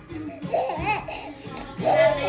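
Infant laughing in high-pitched squealing bursts, once about half a second in and again near the end, over background music.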